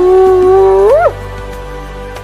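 A spotted hyena's whoop call: one long held call that rises sharply in pitch at its end and cuts off about a second in, over background music.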